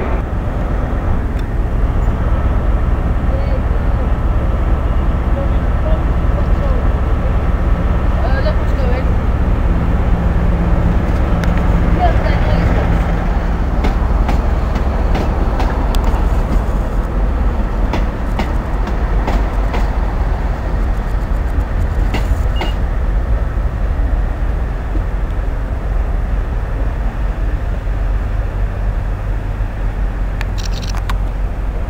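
Railway station ambience: a steady low rumble of diesel trains, with a held engine tone for a few seconds about a third of the way in. Faint voices and a few scattered clicks sit behind it.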